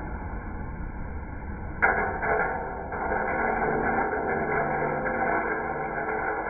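Aillio Bullet R1 coffee roaster running with a low hum; nearly two seconds in, a sharp clack as the drop door is opened, then a dense rattling rush as the roasted beans pour out of the drum into the stainless cooling tray, marking the end of the roast.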